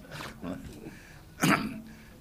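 A man clears his throat once into a desk microphone, a short, loud rasp about one and a half seconds in, after a moment of faint voices.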